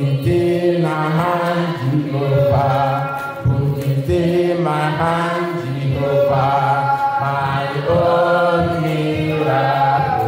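Worship singing: voices holding long, wavering sung notes in chant-like phrases over steady low notes underneath.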